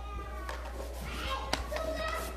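Faint, distant voices of people in the room, over a steady low hum, with a single sharp click about one and a half seconds in.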